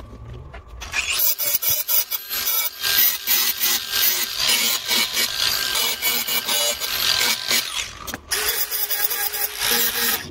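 Angle grinder cutting into the steel body of an old diamond saw blade, giving a harsh, fluttering grinding hiss. It starts about a second in, breaks off briefly about eight seconds in, then resumes.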